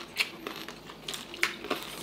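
Crispy deep-fried pork knuckle skin crunching as it is torn apart and eaten: a handful of sharp, separate crackles spaced through the two seconds.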